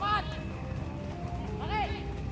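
Two short high calls from a voice, each rising then falling in pitch, one at the start and one about a second and a half later, over steady background music.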